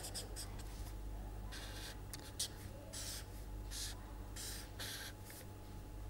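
Felt-tip marker writing on paper: a series of short, faint scratchy strokes, most of them after the first second and a half.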